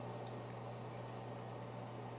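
Faint room tone: a steady low hum with a light hiss over it.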